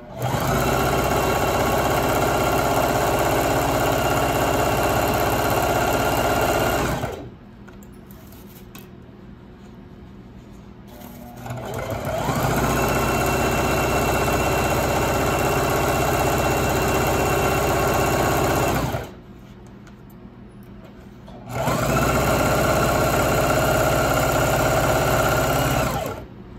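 Singer electric sewing machine stitching a fabric hem, running steadily in three runs of several seconds each with short stops between. The second run builds up in speed as it starts.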